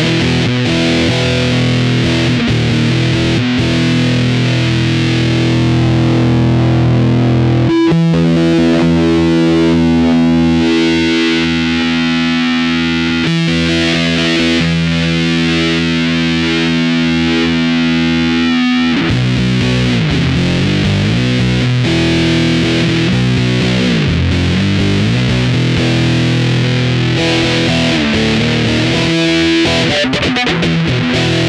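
Electric guitar played through a Keeley Octa Psi fuzz pedal, heavily distorted. It riffs, then about eight seconds in holds one chord ringing for about ten seconds, then goes back to moving riffs.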